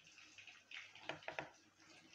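A few faint soft taps and clicks of sliced onion pieces dropping into a stainless steel mixer-grinder jar, clustered about a second in.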